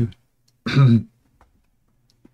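A man clears his throat once, a short voiced rasp about halfway through.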